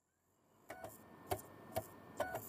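A few faint, sharp keyboard-typing clicks, irregularly spaced, starting after a short silence: a typing sound effect.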